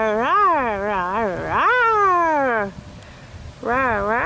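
A woman's voice making wordless, warbling sounds, the pitch swinging up and down several times and then sliding down in one long fall; a second warbling stretch starts near the end. It is a silly voice given to a squeezed snapdragon flower as if its mouth were talking.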